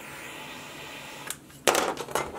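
Butane jet-flame torch lighter hissing steadily as it melts the frayed end of a nylon paracord strand, cutting off with a click about a second and a half in. A short, loud rush of noise follows near the end.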